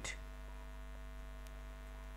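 Steady, faint electrical hum with a buzzy row of overtones: mains hum picked up by the recording setup, heard in a gap in the speech.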